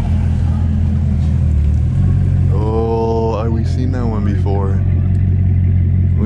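Car engine and road drone heard from inside the cabin while driving slowly, a steady low hum that shifts in pitch about two seconds in. Voices sound briefly over it in the middle.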